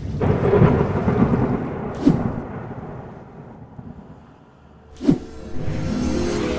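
Thunder sound effect: a rumble that starts suddenly and slowly dies away, with a sharp crack about two seconds in and another just before the end.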